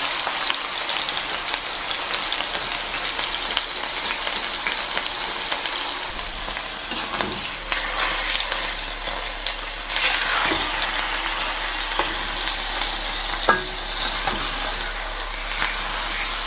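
Chicken breast searing in a frying pan: a steady sizzle, with a few knocks and scrapes of a utensil as the breast is turned. The sharpest knock comes about three-quarters of the way through.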